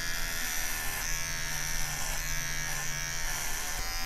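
Electric hair clippers running with a steady buzz and a thin high whine.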